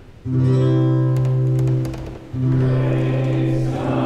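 A hymn starts abruptly in church: two long held chords, the second beginning about two seconds in, with voices singing.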